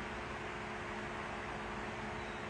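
Steady room tone: an even hiss with a faint, unchanging low hum and no distinct events.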